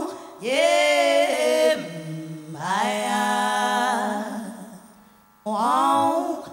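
A woman singing unaccompanied into a microphone in long held phrases, with a short silence about five seconds in before the next phrase begins.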